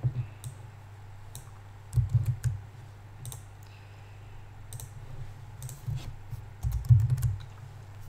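Computer keyboard keys and mouse clicks picked up loudly by a microphone standing on the same desk. There are scattered light clicks, with clusters of heavier thumps about two seconds in and again near seven seconds, all over a steady low hum.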